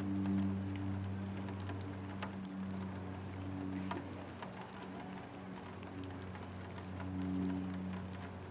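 Light rain patter and dripping with scattered small ticks, over a steady low hum that swells and fades slightly.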